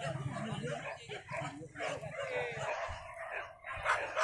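Hunting dogs yelping and whining in short, sliding calls, with people's voices mixed in.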